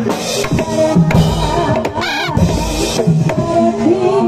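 Live drum-led music from a Javanese percussion ensemble: a run of irregular drum strokes, with a short rising-and-falling pitched line about halfway through and a held tone near the end.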